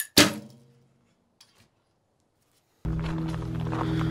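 Recurve bow shot: a light click, then the sharp crack of the string's release with a short ringing from the bow that fades within half a second. About three seconds in, background music starts.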